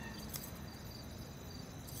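Faint, steady high-pitched chirring of crickets.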